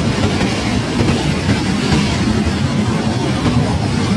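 F-16 fighter jet's engine running as the jet rolls along the runway: a loud, steady, deep rushing noise with hiss on top.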